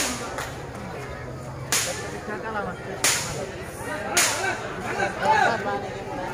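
A volleyball struck by hand during a rally: four sharp slaps about a second or so apart, with low voices from the crowd between them.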